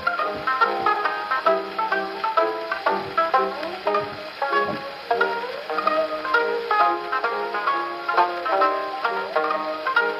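Banjo solo played back from a 78 rpm shellac disc on an HMV Model 145 acoustic gramophone: a fast, unbroken run of plucked notes with little high treble, heard through the machine's soundbox and horn.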